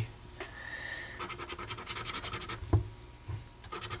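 A handheld scratcher scraping the coating off a scratch-off lottery ticket in rapid short strokes, with one sharper knock about two and a half seconds in.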